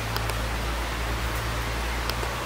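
Steady background hiss with a low, even hum underneath: room tone with no speech.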